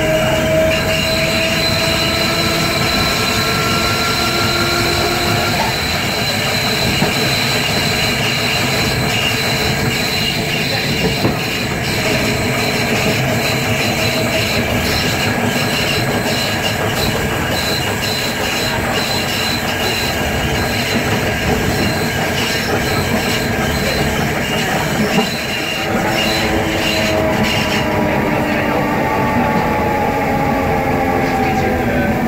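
Electric traction motor of a Ganz MX/A HÉV suburban train, heard through an open floor hatch: its whine rises in pitch over the first few seconds as the train gets up to speed, gives way to loud wheel and rail noise with a thin steady high tone while running, and comes back falling in pitch near the end as the train slows.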